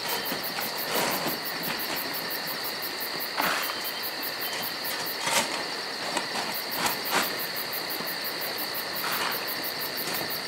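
A steady high-pitched buzzing trill with irregular crackling whooshes every second or two.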